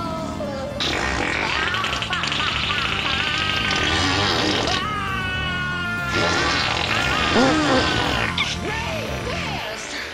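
Exaggerated comedic fart sound effects over music, in two long stretches with a short break about five seconds in.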